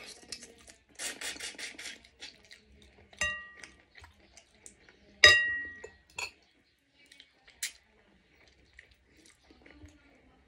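A metal spoon and fork clink against a ceramic soup bowl: two ringing clinks about two seconds apart, the second the loudest, with a few lighter taps afterwards. About a second in there is a brief rapid rattle.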